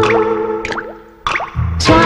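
Instrumental passage of a Telugu film song: held notes fade and the music nearly drops away about a second in, then a few sharp percussive hits with quick falling pitch slides bring the full band back near the end.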